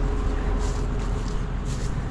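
Diesel tractor engine idling steadily, a low even rumble with a faint held tone.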